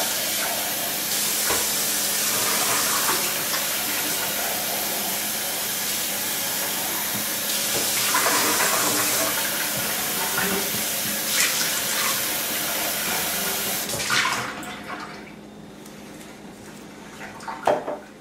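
Kitchen tap running into a stainless steel sink, the stream broken up as coffee grounds are rinsed out and hands are washed under it. The water shuts off about fourteen seconds in, leaving only faint handling sounds.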